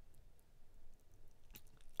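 Quiet room tone with a few faint, scattered clicks.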